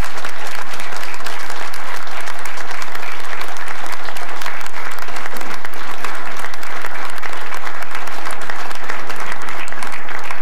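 Applause from a roomful of about twenty seated people, steady dense clapping that keeps going.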